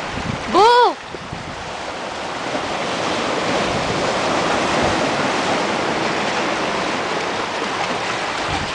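Small waves washing in and out over the rocks at the shoreline, with wind on the microphone. About half a second in, one short, loud call rises and falls in pitch.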